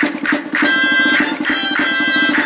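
Gaita, the Riojan double-reed shawm, playing a folk dance tune in sustained, reedy notes, with the dancers' castanets clicking in short rolls about twice a second.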